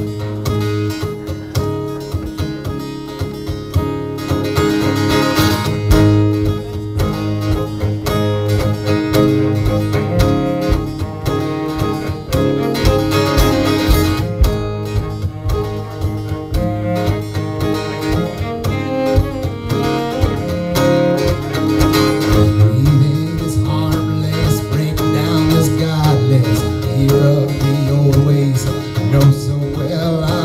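Live instrumental duo music with no singing: a steadily strummed acoustic guitar and a cello, played first under the strumming and then bowed in sustained low notes that grow stronger in the second half.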